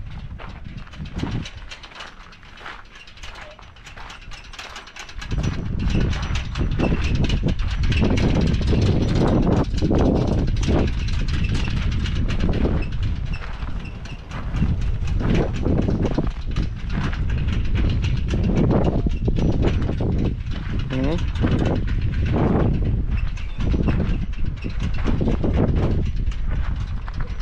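Wind buffeting the camera microphone: a heavy low rumble that comes up about five seconds in and stays, with indistinct voices under it.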